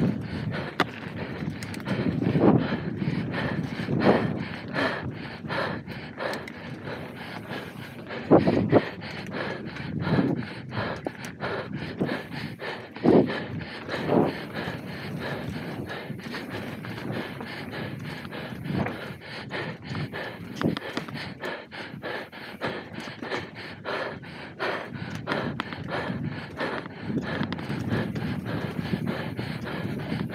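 Mountain bike rattling and clattering as it is ridden fast down a rough dirt trail, with occasional louder thumps, and the rider breathing hard.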